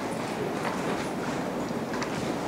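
Steady background noise of a meeting room, with a few faint clicks.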